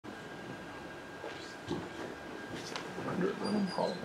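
Room tone with a faint steady high-pitched whine, a few soft brief sounds, and low murmured voices in the last second or so.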